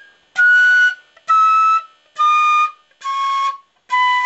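A B-flat marching-band flute plays a descending scale one note at a time. Each note is tongued and held about half a second, and the notes step down through the fingered A, G, F and E, with the low D starting near the end.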